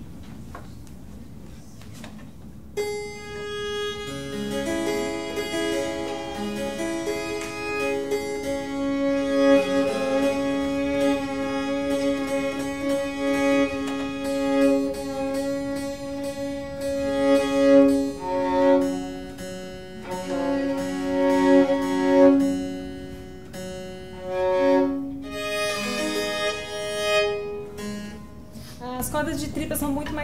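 Baroque violin with gut strings being tuned: long bowed notes, often two strings sounding together, held and shifted in pitch every few seconds as the strings are brought to pitch, which drift with changes in temperature.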